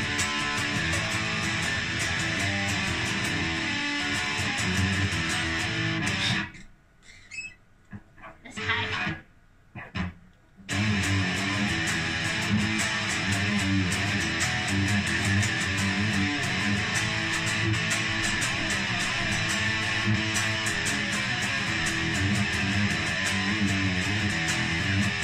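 Electric guitar played continuously, a steady run of notes that breaks off for about four seconds around the middle, with only a few scattered notes, then picks up again.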